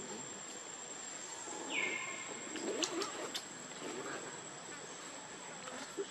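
Monkey calls over a steady outdoor hiss: a short, high, falling squeak about two seconds in, low calls around it, and two sharp clicks near the middle.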